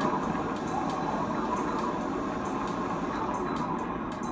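A steady rushing noise with no clear pitch, over faint background music with a light, regular beat, playing from an educational video's soundtrack.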